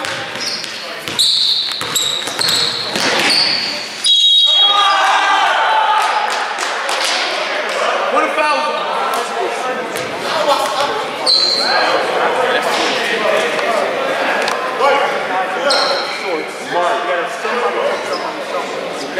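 Basketball dribbling and sneakers squeaking on a gym floor. A referee's whistle sounds sharply about four seconds in, followed by players' and coaches' voices in the reverberant gym.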